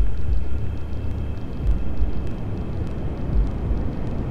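Dark, low rumble from a film's sound design, with faint crackling ticks above it.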